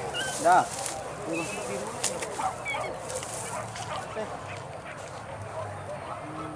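Hunting dogs yelping in short, rising-and-falling cries on the trail of a wild boar, loudest about half a second in, then fainter and scattered.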